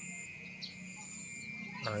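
Insects keeping up a steady high-pitched trill, with a thinner, higher tone that stops and starts. A man's voice says a word near the end.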